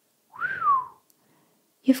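A woman's short whistle, rising and then falling in pitch, lasting under a second, with some breath behind it.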